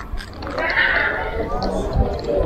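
People's voices, with a brief high-pitched call about half a second in, over a low rumbling background.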